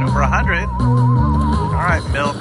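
Journey to the Planet Moolah video slot machine playing its bonus music: a wobbling, theremin-like tone over a stepping bass line. Warbling sweep effects come in twice, once near the start and once near the end, as a UFO beam comes down on a reel.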